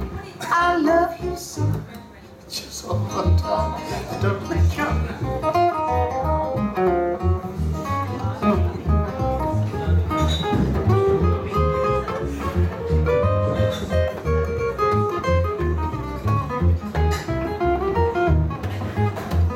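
Live blues instrumental break: an upright double bass plucked in a steady walking pulse under a guitar playing a melodic line, with a brief drop in loudness about two seconds in.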